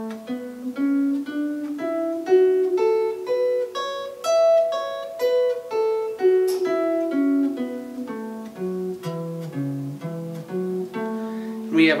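Electric guitar playing the A major pentatonic scale one note at a time, starting on A at the 12th fret of the fifth string. It runs up the scale, then back down below the starting note, and climbs again near the end, at about two to three notes a second.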